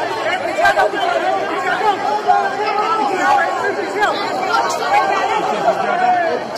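Many men's voices talking and calling out over one another at once: a crowd in a commotion.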